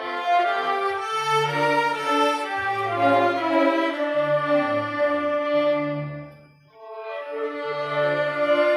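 String ensemble of violins and cellos playing held, bowed notes over a moving bass line, with a short break about six and a half seconds in before the phrase resumes.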